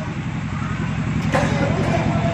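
An engine running steadily with a low, rapid pulsing throb that grows slightly louder.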